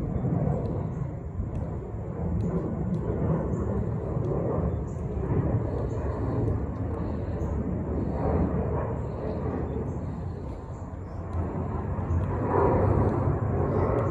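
Outdoor ambience: a steady low rumble like a distant engine, with a faint murmur of voices, growing a little louder near the end.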